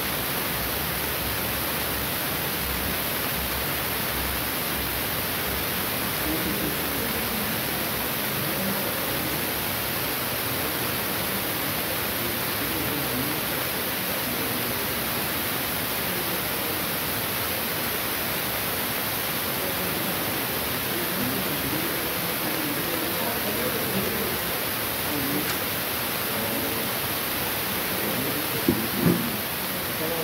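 A steady, loud hiss fills the whole stretch, with faint voices in the background and two short bumps just before the end.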